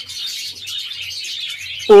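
A flock of budgerigars chattering in an aviary: a steady, dense high twittering of many birds at once.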